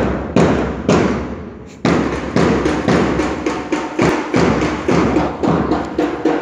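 Drums beating for a march: a few single loud strokes about half a second apart, then from about two seconds in a quicker, steady beat of several strokes a second.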